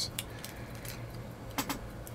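Quiet room with a low steady hum and a few faint handling clicks, the sharpest about one and a half seconds in.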